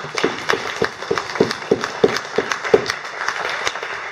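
Small audience applauding, with a few louder individual claps standing out at about three a second.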